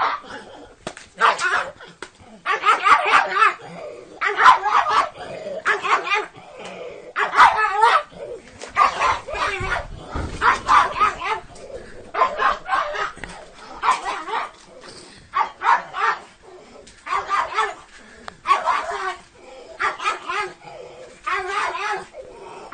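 Small dog barking over and over in short bursts, about one to two barks a second with brief pauses between.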